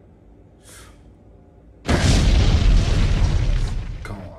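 Edited-in explosion sound effect: a sudden loud boom about two seconds in, followed by a deep rumble that fades near the end.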